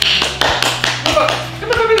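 A quick run of sharp taps and claps, with a short bit of voice near the end.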